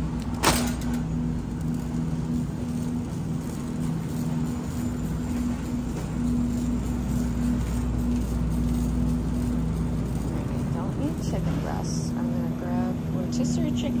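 Shopping cart rolling over a hard store floor with a steady rumble and hum, and a sharp clack about half a second in.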